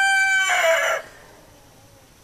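A rooster crowing: one long call held on a steady pitch that drops at the end and stops about a second in.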